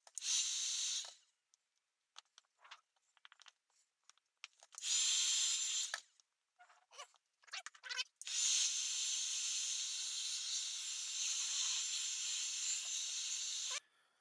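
Electric heat gun blowing in three spells: about a second at the start, a second and a half around the middle, then about five and a half seconds to near the end, each starting and stopping sharply. It is melting beeswax into a wooden knife handle to seal it; light clicks and taps between the spells.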